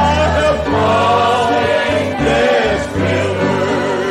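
Voices singing a gospel hymn together over instrumental accompaniment, with held low notes changing about once a second under the sung melody.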